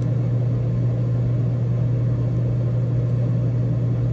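RV air conditioner running on inverter power from the batteries with its compressor on: a steady low hum under an even rush of air.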